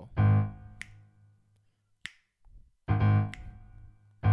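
Piano: a low A-flat octave struck twice with the left hand, each ringing out, with three finger snaps between the strikes marking the beat of the rhythm.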